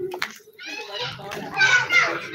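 Children's high voices calling out and playing, getting louder in the second half.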